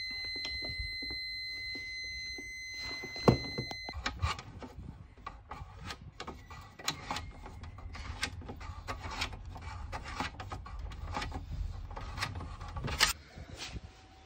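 Megger MFT1721 multifunction tester's continuity buzzer sounding one steady high beep, the sign of a low-resistance continuity reading, which cuts off suddenly about four seconds in. After it come many small clicks, taps and scrapes of a spanner working a brass nut on the metal consumer unit enclosure.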